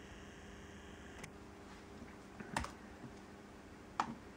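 Faint clicks from a 13-inch MacBook Pro with Retina display being operated: a light click about a second in, then a couple of sharper clicks around two and a half seconds, over quiet room tone.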